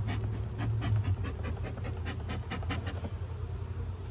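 Bee smoker's bellows squeezed in a quick run of breathy puffs of air, driving smoke over the open hive to calm the bees; the puffing stops about three seconds in.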